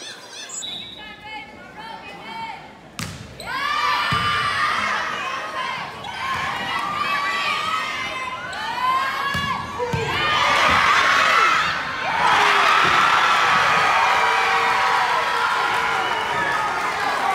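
Volleyball rally in a gym: a sharp smack of the ball about three seconds in, then spectators and players shouting over the play, swelling into loud cheering about twelve seconds in as the point is won.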